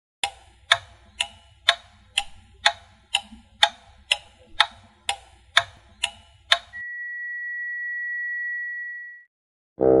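Clock ticking, about two ticks a second, then a single steady high beep held for about two and a half seconds, like a timer going off.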